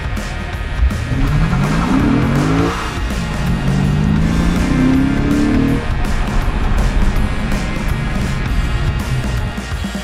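Lexus RC F's naturally aspirated 5.0-litre V8 accelerating hard, its revs climbing in two pulls with an upshift between them about three seconds in, under background music with drums.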